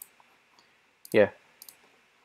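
A few light clicks of a computer mouse: one at the start, then two close together about a second and a half in.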